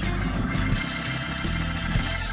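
Live band playing an instrumental passage, with electric guitar and bass over drums and keyboards.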